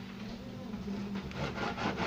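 A dull kitchen knife sawing through a slab of raw bacon on a cutting board, in quick back-and-forth strokes that grow more distinct and louder from about a second in.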